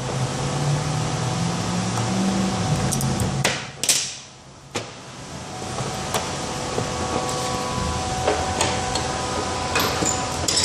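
Steady hum of workshop machinery, with a few sharp metal clicks and clinks as U-joint bearing caps and pliers are handled on a steel table; the loudest clack comes just before four seconds in.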